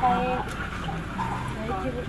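Speech: people talking, with a short pause partway through.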